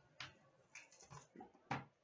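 Faint handling sounds of a trading-card box being opened on a glass counter: several light clicks and taps, the sharpest near the end.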